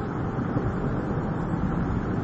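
Distant, steady rumble of Space Shuttle Atlantis's rocket motors, its two solid rocket boosters and three liquid-fuel main engines, during ascent, heard from the ground as an even noise without distinct tones.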